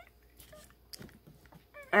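A quiet room with a few faint knocks and rustles from a phone camera being handled and set in place. A woman's voice starts just before the end.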